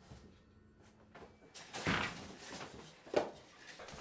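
A closet door being handled: a rustle and knock about two seconds in, then one sharp knock a second later.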